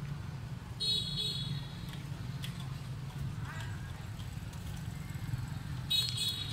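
Outdoor background: a steady low rumble, with two brief high-pitched toots, one about a second in and one at the very end.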